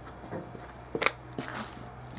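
A thin clear plastic cup being handled, giving a few sharp crinkling clicks, the loudest about a second in, over a steady low hum.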